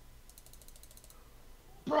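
A fast run of light clicks from a computer mouse, about fifteen a second, lasting under a second.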